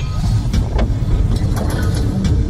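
Sound effects from a logo intro animation: a deep, continuous rumble with several sharp metallic hits over it.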